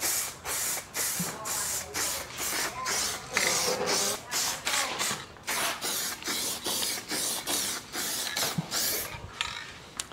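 Aerosol spray can of colour-matched automotive base coat spraying in short stop-and-start hisses, about two a second, laying on a light third coat.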